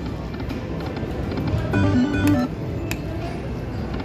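Video slot machine's electronic music and sound effects during a spin that pays a small win, with a short stepped melody of notes about two seconds in, over steady casino background din.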